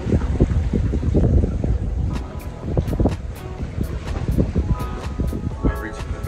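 Wind buffeting the microphone, an irregular gusty low rumble, under quiet background music.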